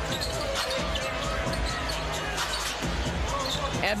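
A basketball being dribbled on a hardwood arena court, with repeated low bounces and short high squeaks near the end.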